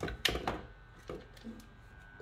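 Faulty Aldi hair dryer giving a faint, steady buzz as its heating element glows red and starts to smoke. A few handling clicks and knocks come first.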